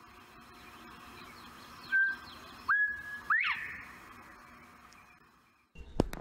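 A bird's clear whistled call outdoors: a short level note, a longer held note, then a quick upward-sweeping note, over a faint background of distant chirping.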